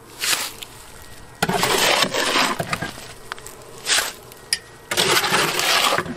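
Shovel scraping and chopping through gritty concrete mix inside a steel drum, in four strokes about every second and a half, two short and two longer.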